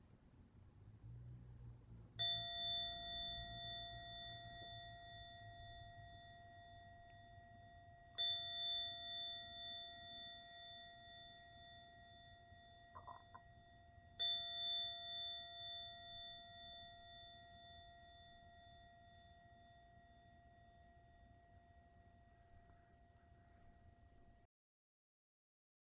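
Meditation timer chime struck three times, about six seconds apart, each ringing out and slowly fading; the chimes mark the start of a zazen session.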